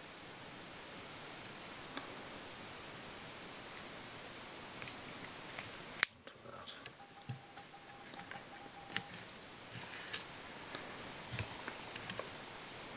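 Small clicks and rustles of fly-tying tools and materials being handled, with one sharp click about six seconds in. The first half is quiet room hiss.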